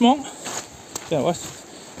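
A man's voice in short snatches: the end of a phrase right at the start and a brief voiced sound about a second in, with low background noise between.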